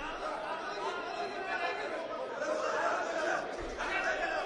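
Indistinct chatter of several voices talking and calling out, echoing in a large sports hall.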